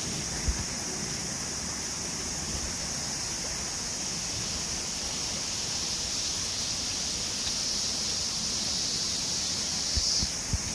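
Cicadas buzzing in one steady, unbroken high drone, over a low, even rushing noise.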